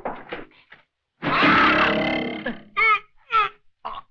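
Wordless vocal outbursts: a few short sounds at the start, a longer cry about a second in, then two short sharp cries near the end.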